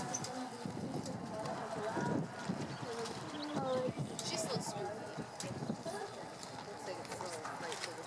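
Hoofbeats of a horse cantering on sand arena footing, with people talking in the background.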